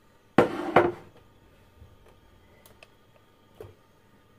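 Two quick knocks of kitchenware about half a second in, then a few faint clicks and a soft knock near the end, as a frying pan and a plastic tub are handled at the stove.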